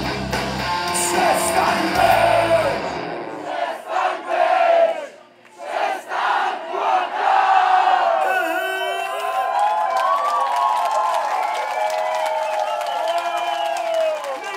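Live rock band's full-band song, with bass and drums, ending about three seconds in, followed by the audience cheering and shouting.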